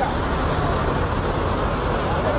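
Steady engine noise from motorcycles idling and moving slowly on the road, under faint crowd voices.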